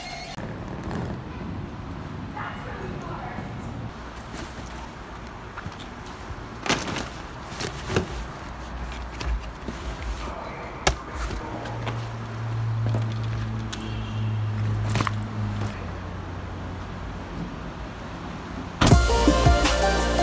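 Luggage being handled in a vehicle's cargo area: scattered knocks and thuds over a low background, with a steady low hum for a few seconds midway. Music starts abruptly near the end.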